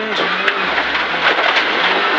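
Rally car driven on a gravel stage, heard from inside the cabin: the engine holds steady revs under a constant rush of gravel and tyre noise, with a single sharp knock about half a second in.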